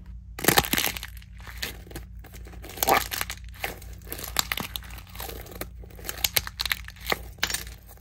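Hardened plaster shell on a foam squishy ball cracking and crunching under squeezing fingers: many sharp, irregular crackles and snaps as the shell splits and its pieces are peeled off.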